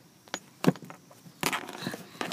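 Handling noise: a few sharp clicks and knocks, then rustling from about halfway through, as a car seatbelt and plush toys are handled.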